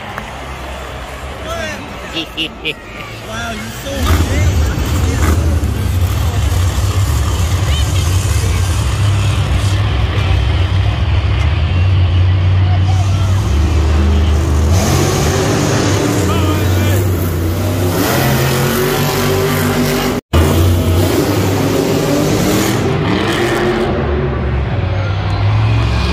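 Several monster trucks' supercharged V8 engines running loud and deep in an arena, the rumble starting about four seconds in. The sound drops out for an instant near the end.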